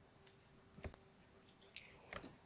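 Near silence: room tone, with a single faint click a little under a second in.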